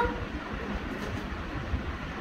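Steady low rumbling background noise with a faint hiss and no distinct events; a child's voice trails off right at the start.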